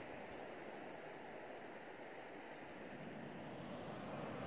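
Faint, steady outdoor noise of distant sea surf and wind.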